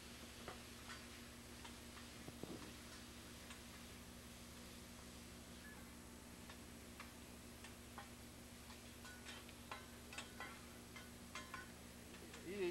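Near silence with faint, scattered metal clicks and taps of a chef's spatula and fork on a steel teppanyaki griddle, coming more often in the second half, over a steady low hum.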